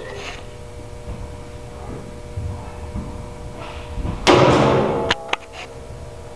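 Barnett Quad 400 crossbow fired once about four seconds in: a single sharp, loud release that rings on in an echoing room, followed by two quick sharp clicks.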